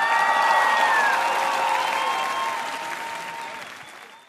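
Audience applauding and cheering, with a few drawn-out voiced cheers above the clapping; it swells at the start and fades out near the end.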